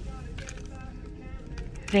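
Faint background music playing in the store, with sustained notes over a low steady hum, and a couple of light clicks.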